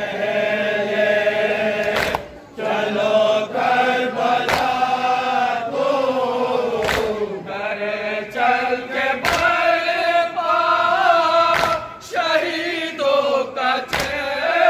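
A group of men chanting a nauha, a Shia lament, in unison. Sharp collective chest-beats (matam) come about every two and a half seconds.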